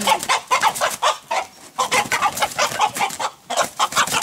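A domestic hen giving rapid, short squawks and clucks of alarm as it is caught and struggles.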